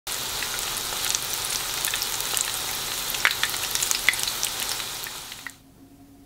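Corn and shiso tempura fritters deep-frying in hot oil: a steady, dense sizzle with sharp pops and crackles scattered through it, fading out about five and a half seconds in.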